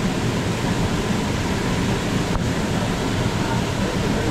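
Steady rushing of a waterfall's falling water, an even roar without a break.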